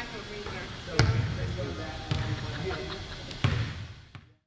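Basketball bouncing on a hardwood gym floor: three loud, echoing bounces about a second or more apart.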